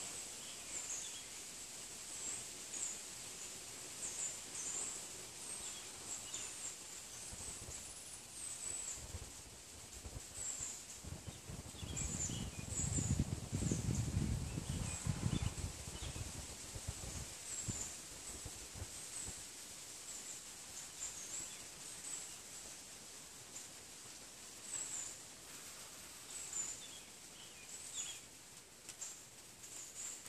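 Outdoor ambience: scattered short, high-pitched bird chirps, with a low rumble that swells for a few seconds in the middle.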